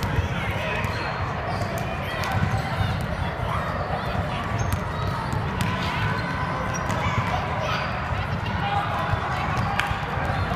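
Basketball dribbled and bouncing on a hardwood gym floor, with sneakers squeaking during a youth game. Spectators and players talk throughout in the echoing gym.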